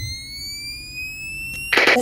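A single sustained high tone, rising slowly and steadily in pitch. It cuts off abruptly in a short burst of noise near the end.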